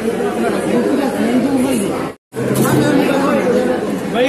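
Overlapping chatter of many voices around a crowded restaurant table, with no single clear speaker. The sound drops out completely for a split second a little past halfway, then the chatter carries on.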